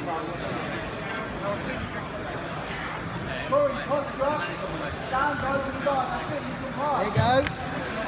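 Many voices talking and calling out over one another in a hall, with louder shouts about three and a half seconds in and again near the end, and a short knock just after seven seconds.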